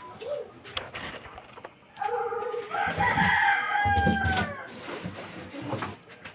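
A rooster crowing once, one long call of about two and a half seconds starting about two seconds in, rising and then held. A few light knocks come before it.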